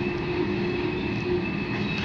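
A long freight train's cars rolling slowly past, making a steady rail rumble with a thin, steady high-pitched squeal over it.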